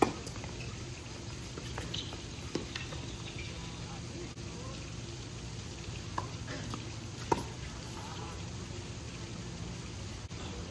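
Doubles tennis rally: sharp pops of rackets hitting the ball, the loudest right at the start and another about seven seconds in, with smaller knocks between, over a steady background hiss.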